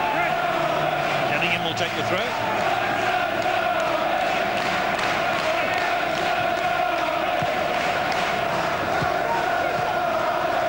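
Football stadium crowd chanting: a steady, unbroken mass of many voices singing from the stands.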